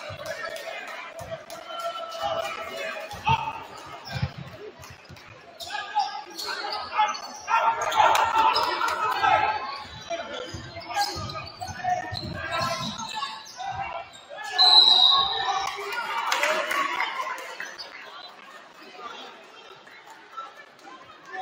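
A basketball dribbled on a hardwood gym floor, with the crowd's voices in the background. Just before fifteen seconds in comes a short, loud, high referee's whistle blast that stops play for a personal foul.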